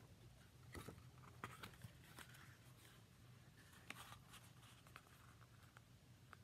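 Near silence with faint, scattered paper rustles and light clicks as a booklet is handled and its pages opened.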